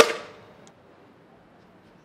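A single sharp clang at the very start that rings out and fades over about half a second.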